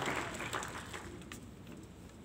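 Echo of a man's preaching voice dying away in a large hall, leaving faint room noise with a few small clicks.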